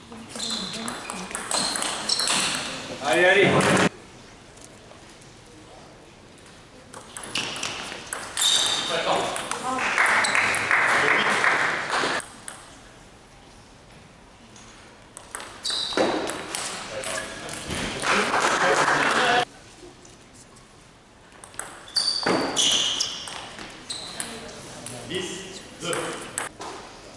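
Table tennis rallies: the ball clicking back and forth between bats and table in quick exchanges, four rallies in all. Most end in a loud burst of shouting and cheering.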